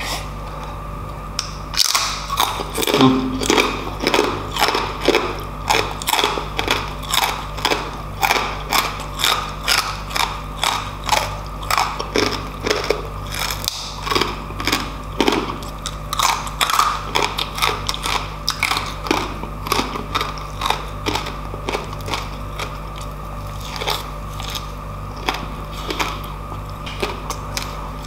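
Close-miked crunching and chewing of crispy lechon pork skin (crackling), in a steady rhythm of about two crunchy chews a second.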